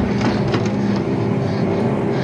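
Loud, dense film score of sustained, clashing tones held steady, with no break or strike inside these two seconds.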